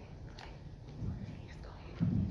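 A quiet, indistinct voice murmuring near the microphone, with a few faint clicks.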